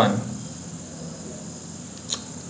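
A steady, thin, high-pitched background whine with a faint low hum underneath, unchanging through the pause after a spoken word.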